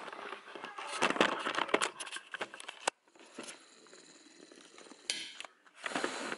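Camera handling noise: rustling and a dense run of clicks and knocks as a handheld camera is picked up and moved in close to a plate. The noise cuts off suddenly about three seconds in, and only faint scattered handling sounds follow.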